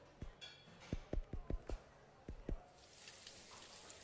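Quick kitchen cooking sounds: a run of about eight soft, low thuds in the first two and a half seconds, then burgers starting to sizzle on a hot griddle, the hiss swelling near the end.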